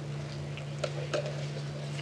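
Room tone through a podium microphone during a pause in a speech: a steady low hum with a few faint ticks about a second in.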